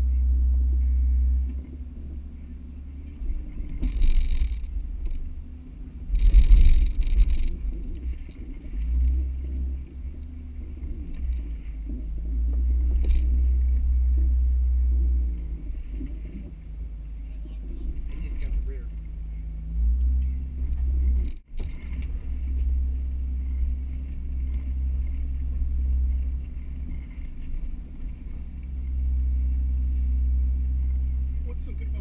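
Mercedes G320's engine running low and steady as the truck crawls off-road over rocks, rising and falling with the throttle. Louder bursts of scraping or knocking about 4 seconds in and again around 6 to 7 seconds in.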